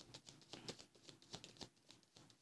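Tarot cards being shuffled by hand: a faint, rapid, irregular run of soft card flicks and taps.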